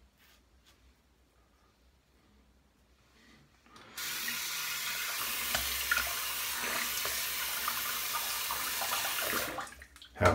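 Bathroom tap running into a sink, a steady hiss of water that comes on suddenly about four seconds in and shuts off just before the end, after a few quiet seconds.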